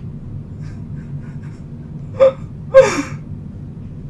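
A woman's two short breathy laughing gasps about two seconds in, the second sliding down in pitch, over a low steady room hum.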